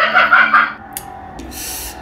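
Short musical sting on an electronic keyboard: a held chord, with a click about halfway through and a brief burst of hiss near the end.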